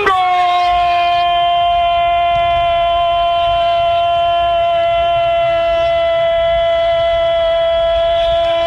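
A radio football commentator's long, drawn-out goal cry: one high note held steady on a single breath, announcing a goal.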